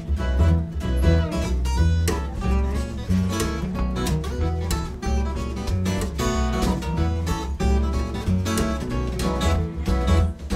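Bluegrass string band playing an instrumental tune: acoustic guitars picking quick runs of notes over the steady beat of an upright bass.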